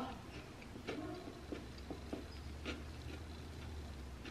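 Faint chewing of a soft, sticky cookie: a few quiet mouth clicks and smacks over a low hum.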